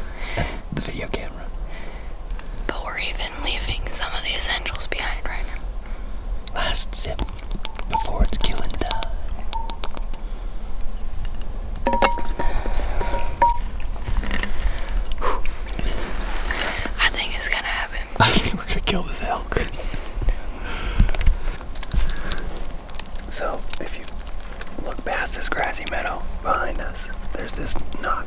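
Hushed whispering between people, with two short steady tones, one about eight seconds in and one about twelve seconds in.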